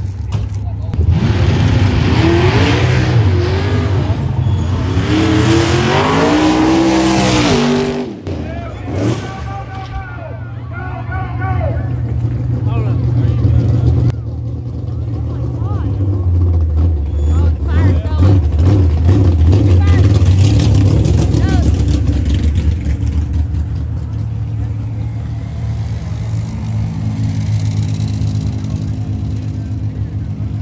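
Race car engine revving hard, its pitch sweeping up and down several times through the first eight seconds, then a steadier low engine drone for the rest.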